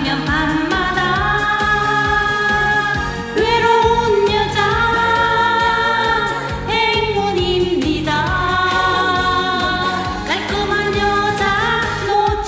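A woman singing a Korean trot song live into a microphone over an amplified backing track with a steady beat, holding long notes.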